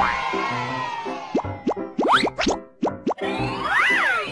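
Cartoon-style children's theme jingle with a steady beat. About a second and a half in, a quick run of rising 'bloop' sweeps plays, followed near the end by one pitch that rises and then falls.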